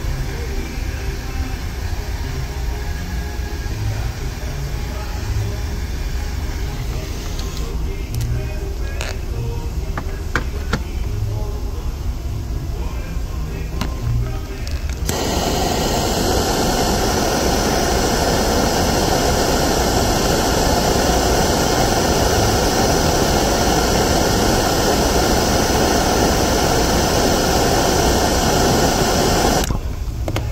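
Gas torch flame hissing steadily close by as it heats a plastic-welding iron tip. It starts suddenly about halfway through and stops just before the end. Before it there is only a low hum with a few faint clicks.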